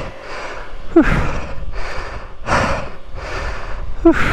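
A person breathing hard after exertion: a run of heavy breaths in and out, about one a second, with a short voiced gasp about a second in.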